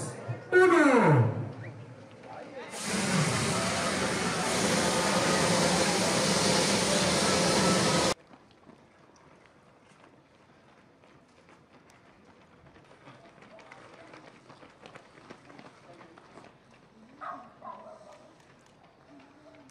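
An announcer calls the last numbers of a race-start countdown, then a loud, steady crowd roar rises as the runners start and lasts about five seconds before cutting off abruptly. After the cut only faint street sound remains, with a brief voice near the end.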